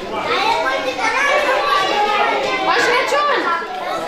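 Many children talking and calling out at once, an unbroken hubbub of young voices overlapping with no single speaker standing out.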